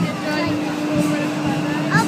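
Voices of riders and onlookers calling out over a steady low hum, while a swinging fairground ride is in motion; a rising cry comes near the end.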